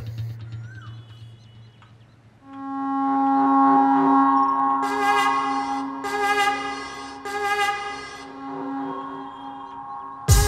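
Film background score. The preceding music fades away, then about two and a half seconds in a sustained chord swells up and holds, with a few short shimmering accents over it near the middle.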